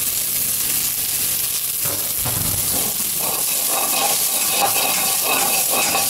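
Diced onion and garlic frying in melted butter in a stainless steel pot, with a steady sizzle.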